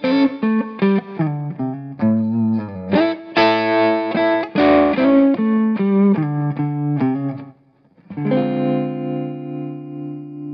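2016 Gretsch G5422TG Electromatic hollow-body electric guitar with Blacktop Filter'Tron pickups, played through an amplifier: a quick run of picked notes and chords, a brief break, then a final chord struck and left to ring out.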